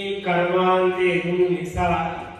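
A Buddhist monk's voice chanting in long, drawn-out syllables on a steady pitch, with a brief break near the end.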